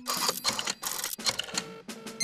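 Cartoon pigs laughing in a run of short snorting bursts, about three or four a second, with the tail of a held musical note in the first half second.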